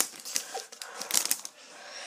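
Foil wrapper of a Match Attax card pack crinkling as the cards are pulled out of it, a run of quick crackles that dies away about a second and a half in.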